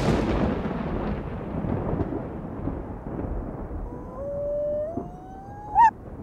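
Halloween intro sound effect: a thunder rumble that fades away over several seconds, then a single howl rising slowly in pitch about four seconds in, ending with a quick upward sweep.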